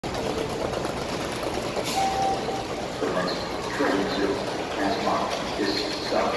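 Ambience of an underground subway platform: a steady hiss and hum, with a short high tone about two seconds in and distant voices from about three seconds on.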